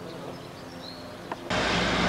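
Quiet outdoor ambience with a few faint bird chirps. About one and a half seconds in, a video cut brings a sudden, much louder steady rushing noise with a low hum, like a motor vehicle running close by.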